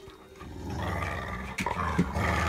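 A dog growling in play during a tug-of-war over a rubber toy: a low, rough, continuous growl that starts about half a second in.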